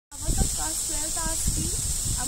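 A girl speaking, over a steady high-pitched hiss.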